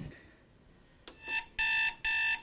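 A recorded electronic alarm played back through a portable CD player: a click about a second in, then loud, even beeps starting near the end, about two a second.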